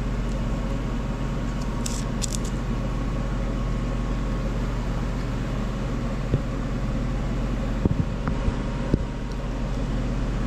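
Steady low machine hum in a workshop, with a few light knocks as cast turbine housings are handled on the bench.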